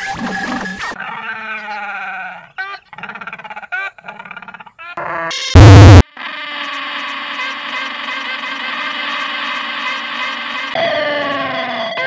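A run of edited novelty penguin sound effects: short pitched calls and falling glides, a brief very loud distorted blast about halfway, then a long steady synth-like tone, and more falling calls near the end.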